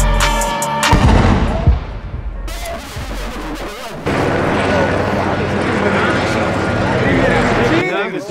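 Gunfire and explosion sound effects: the music's beat cuts off about a second in and gives way to a dense, crackling roar that jumps louder about halfway through.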